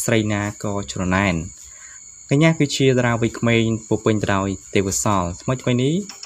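Speech: a voice narrating, with a short pause about a second and a half in, over a faint steady high whine.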